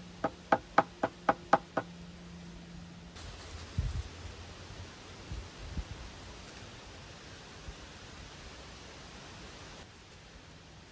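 Six quick, ringing knocks, about four a second, tapping a wooden 2x4 joist to seat it level under a spirit level. Then a few dull low thuds as fieldstones are pressed into wet mortar.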